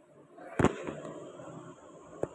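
A single loud, sharp bang about half a second in, followed by lower background noise.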